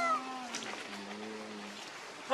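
A young macaque's short, high coo call, falling slightly, right at the start. It is followed by a lower, steady drawn-out sound held for about a second and a half.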